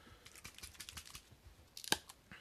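Light plastic clicks and taps of a Citadel contrast paint pot being picked up and handled, with one sharper snap near the end as its hinged flip-top lid is opened.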